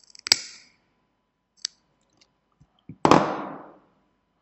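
Small side cutters snipping off the excess wick ends on a rebuildable vape atomizer: one sharp snip about a third of a second in and a smaller click later, then a few faint ticks and a louder clack that fades out over most of a second.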